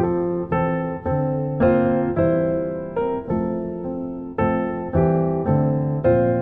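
Background music: a slow, gentle piano piece with notes struck about every half second, each one decaying.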